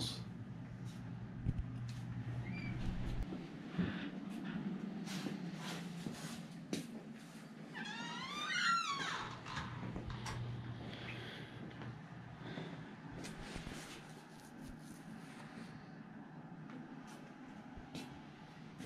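Quiet room with a low hum that comes and goes and scattered light knocks. About halfway through there is one wavering, rising high-pitched squeal lasting about a second.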